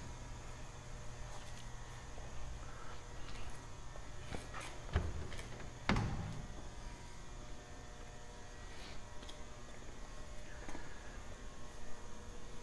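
Quiet room tone: a low steady hum with a few faint knocks and clicks, the most distinct about six seconds in.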